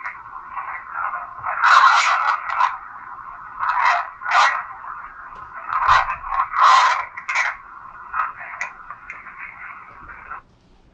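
A recording played back through a phone's small speaker: a steady hiss with irregular scratchy, crackling bursts, loudest about two seconds in and again around four and six to seven seconds.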